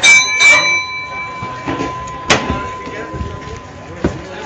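Boxing ring bell struck, ringing out with a clear metallic tone that fades over about three seconds, marking the end of a round. Further sharp strikes come about half a second and about two and a half seconds in.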